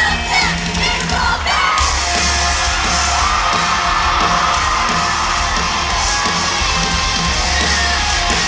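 Live rock band playing loud through a concert PA, with a crowd yelling and screaming along. Voices sing over the music for the first couple of seconds, then the full band comes in heavier about two seconds in.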